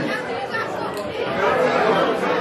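Crowd chatter: many people talking at once in a large hall, with no single voice standing out.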